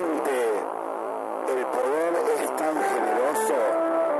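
An amplified voice whose pitch slides up and down, giving way about three and a half seconds in to music with steady held notes. The sound comes straight off an overloaded mixing console.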